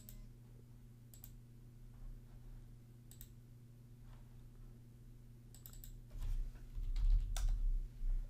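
Scattered computer mouse clicks, then a short run of keyboard typing and a few dull low thumps near the end, over a steady low hum.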